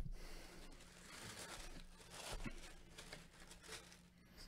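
Faint rustling and crinkling of black packing paper being handled and pushed aside inside a box, in irregular bursts.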